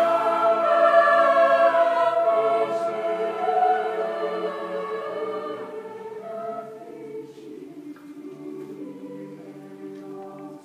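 Mixed choir singing sustained chords, growing gradually softer over the passage.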